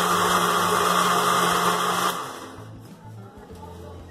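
Countertop blender running, puréeing chili peppers with vinegar, then switched off about two seconds in, its sound stopping abruptly.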